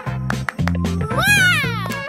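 Upbeat background music with a steady bass line. About a second in, a single high-pitched, meow-like squeal rises and then falls in pitch.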